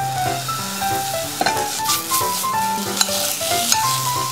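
Ground beef sizzling in a hot frying pan as it is stir-fried, with scattered clicks and scrapes of the utensil stirring it. A melody of background music plays over it.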